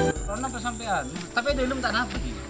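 Background music cuts off abruptly at the start, followed by people's voices talking at a lower level.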